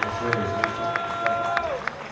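Live rock band music heard from the audience: held notes with short pitch slides over a steady tick about three to four times a second, dropping in level near the end.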